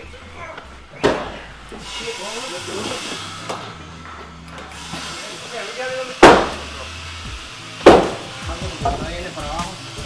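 A work crew calling to one another while manhandling a heavy steamed timber into place, with three sharp knocks of wood being struck, the loudest about six seconds in.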